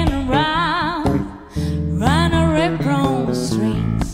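A woman sings a blues melody with wide vibrato on held notes, accompanied by an electric bass guitar. There are two sung phrases with a short break about a second in.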